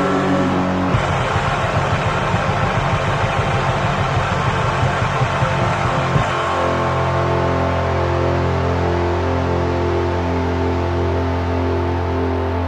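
Recorded Boston hardcore punk band with distorted guitars and drums playing fast and dense. About halfway through, the playing gives way to a single low chord held and left ringing as the song closes.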